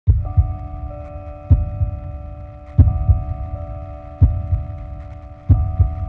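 An intro soundtrack of deep, heartbeat-like double thumps, one pair roughly every second and a half, over a steady sustained chord drone.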